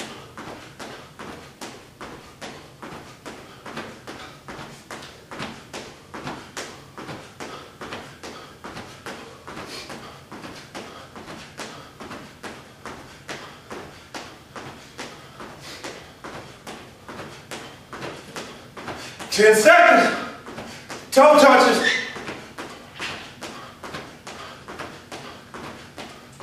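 Feet landing on a hard floor in a steady rhythm of about two thuds a second during jumping-jack style jumps. Near the end a man's voice gives two loud bursts.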